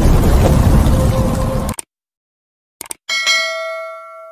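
Dark electronic intro music cuts off suddenly about halfway through. After a brief silence comes a quick click, then a bright bell ding that rings out and fades: a subscribe-button click and notification-bell sound effect.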